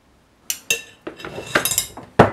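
Two sharp clinks with a short ring about half a second in, then a second of clattering knocks as a filled plastic ice cube tray is lifted away from a glass bowl and set down on a wooden cutting board.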